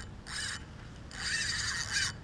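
Spinning fishing reel working under load in two short rasping bursts, a brief one near the start and a longer one from about a second in, as a hooked fish pulls on the line.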